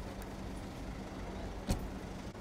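A car door shutting with a single sharp thud near the end, over a low steady rumble.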